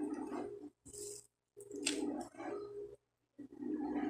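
Plastic shrink-wrap on a calendar crinkling and rustling as it is handled, in several short bursts with brief gaps and a sharp crackle about two seconds in.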